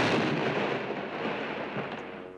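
Cartoon dynamite explosion dying away: a loud blast of noise, set off just before, fading steadily over two seconds.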